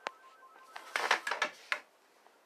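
Handling noise of a phone that is recording: one click at the start, then a quick run of sharp clicks and knocks about a second in.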